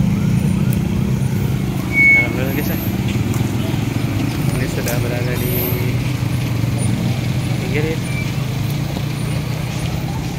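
Slow road traffic passing close by: motorcycle and car engines running steadily, with people's voices in the background. A brief high-pitched tone sounds about two seconds in.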